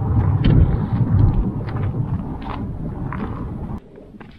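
Wind buffeting the microphone, a heavy low rumble, with faint crunches of footsteps on loose stones. The rumble drops away just before the end.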